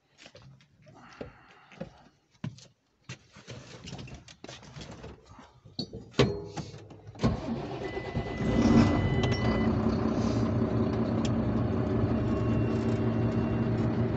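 Scattered knocks and clicks inside a tractor cab, then about seven seconds in the tractor's engine starts, swells briefly and settles into a steady idle.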